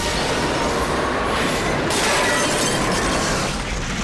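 Explosion sound effect: a detonator-set blast of earth, heard as one long rushing noise that dies down near the end.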